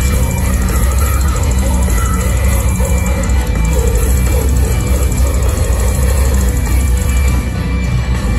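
Deathcore band playing live: distorted guitars and drums at full volume without a break, heaviest in the low end, heard from within the crowd in a large hall.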